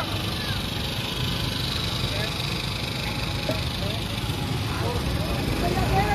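Steady street noise: a low, even mechanical rumble, with faint voices in the background.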